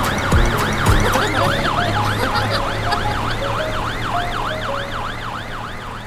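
Fire engine siren in a fast rising-and-falling wail, about three sweeps a second, over a low steady hum. It grows quieter as the fire engine drives away.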